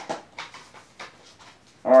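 Paper packing slip and plastic disc cases being handled on a table: a few short rustles and knocks.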